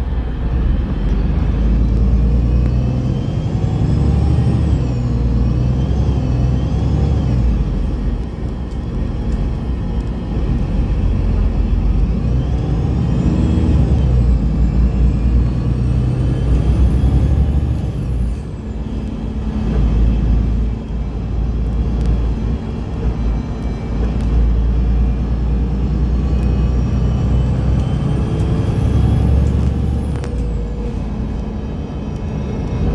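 Bus's Mitsubishi SiC-VVVF inverter and traction motor whining, the whine rising in pitch several times as the bus pulls away and speeds up. It sits over a steady rumble of road and tyre noise heard inside the bus.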